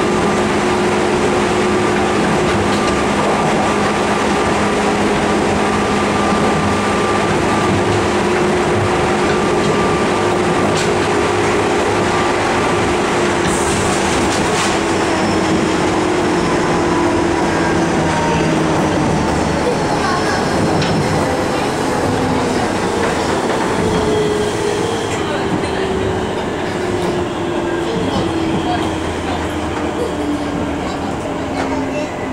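Cabin noise inside a running JR 201 series electric train: a steady rumble of wheels on rail with a motor and gear whine that falls slowly in pitch as the train slows. It grows quieter near the end, and there are a few brief clicks over the rails.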